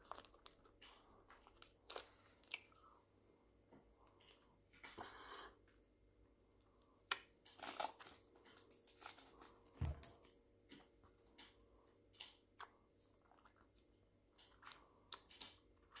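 Faint mouth sounds of someone eating a Napoléon hard candy: scattered small clicks and crunches of the sweet in the mouth.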